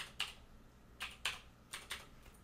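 Computer keyboard keys being typed, about six separate keystrokes at an uneven pace, entering a string of digits.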